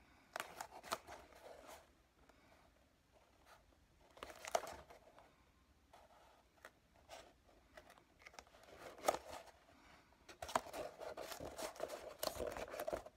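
EVA foam helmet panels handled and pressed together by hand along a seam glued with contact cement: a few short spells of scratchy rubbing and small clicks, the longest near the end.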